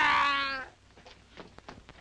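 A long, wailing cry that falls slightly in pitch and stops about two-thirds of a second in. Then comes a quiet stretch with a few faint knocks.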